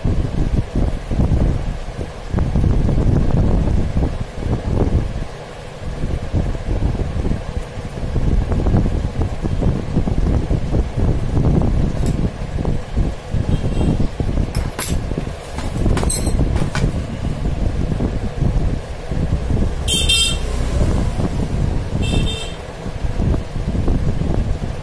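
Loud, uneven low rumbling background noise. A few sharp clicks come in the middle, and two short high-pitched bursts near the end, the first lasting about a second.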